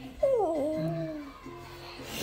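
A young child's short vocal sound that falls in pitch and then holds for about a second, over background music.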